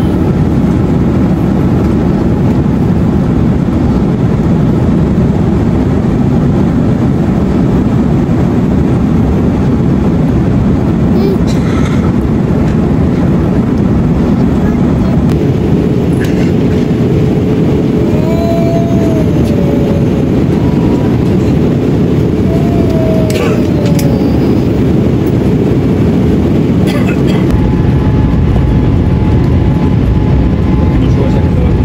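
Steady jet airliner cabin noise in flight: a constant low rush of engines and airflow, with a few faint clicks along the way.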